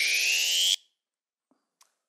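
Synthesized rising sweep sound effect, a scene-change cue: one long upward pitch glide that stops abruptly under a second in.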